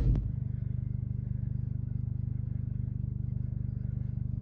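Car engine idling, heard from inside the cabin as a steady low hum with a fast, even pulse.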